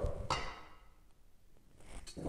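Simple sugar syrup poured from a metal pitcher into a ceramic punch bowl: a faint, brief trickle in the first half second, fading into near silence.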